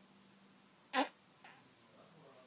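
A single short puff of breath blown hard through pursed lips, with a slight buzz, about a second in.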